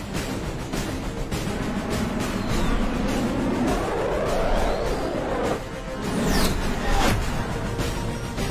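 Action film score mixed with jet fighter sound effects: a jet engine sound rises and then falls in pitch across the middle, followed by a quick downward sweep of another pass.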